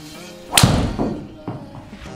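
A driver striking a golf ball full-swing off a hitting mat: one loud, sharp strike about half a second in, followed about half a second later by a softer thud.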